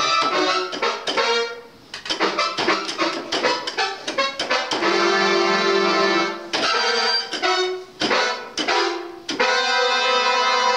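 Portable electronic keyboard played by a small child: groups of keys pressed and held for a second or so, broken by runs of quick, uneven jabs at the keys.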